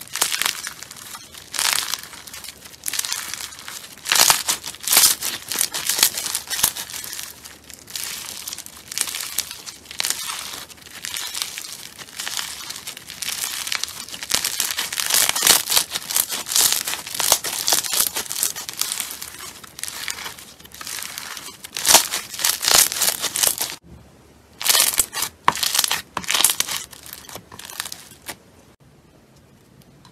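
Foam-bead slime (floam) being squeezed, stretched and pressed by hand, crackling in repeated bursts as the beads squish against each other. There is a short lull near the end before more crackling.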